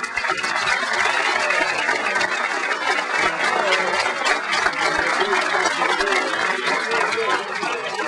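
Audience applauding steadily, a dense clatter of many hands clapping that starts suddenly and eases a little near the end.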